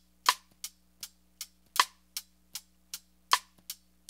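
Drum groove heard through the overhead microphone alone: soft, short hi-hat ticks played with a pencil, about three a second, with a sharper piccolo snare hit every second and a half or so, three in all. The low end is filtered out of this track, so the kick is barely there.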